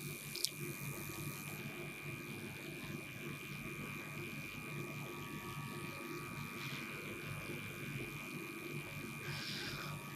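A steady faint buzz with a few held high tones running evenly underneath.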